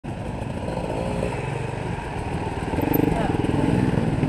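Several dirt bike engines idling together in a steady, even run, with voices faintly in the background.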